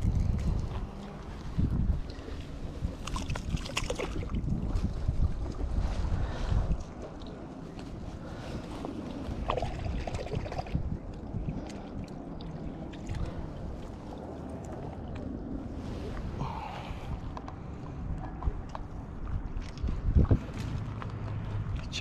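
Wind rumbling on the microphone, heaviest over the first several seconds, then easing, with scattered small knocks and rustles throughout.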